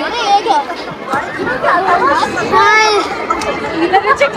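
People's voices talking and calling out over background chatter, with one high raised voice a little before three seconds in.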